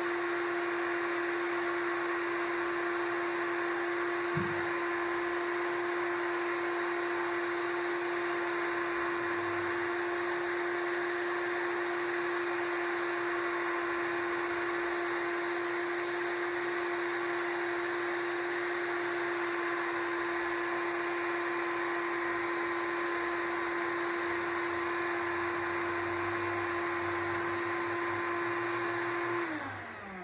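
Shop vac running steadily, pulling sawdust up its hose through a Dust Deputy cyclone separator: a constant motor whine over rushing air. Near the end the vacuum is switched off and the whine falls away in pitch as the motor winds down.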